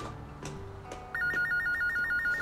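An electronic telephone ringer trilling, a rapid warble between two high pitches, starting about a second in over soft background music.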